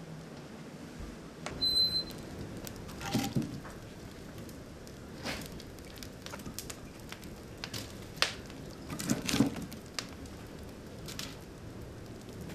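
Wood fire crackling in the open firebox of a maple syrup evaporator, with scattered sharp pops and a few louder knocks of split firewood being handled. A single short high squeak sounds about two seconds in.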